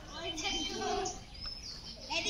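Small birds chirping, with a louder, pitched, voice-like call lasting about a second near the start.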